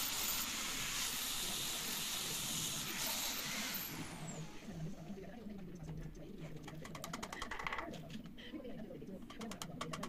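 Handheld electric disc sander running against teak wood with a steady hiss, winding down and stopping about four seconds in. Light clicks and taps follow in the second half.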